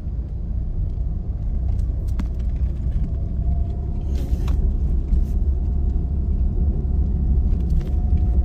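Car driving slowly, heard from inside the cabin: a steady low rumble of engine and road noise, with a few faint clicks.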